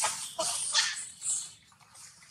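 A newborn long-tailed macaque nursing at its mother, close to the microphone. A cluster of short animal sounds comes in the first second, some with a quick dip in pitch, then it dies away to quiet.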